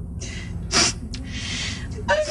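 A woman crying: a sharp gasping breath about a second in, then breathy, tearful sounds.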